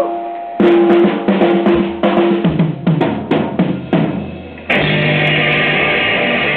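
Live blues band's drum kit playing a fill of snare and tom hits, some toms falling in pitch. A little before the end the full band comes back in loud with electric guitar.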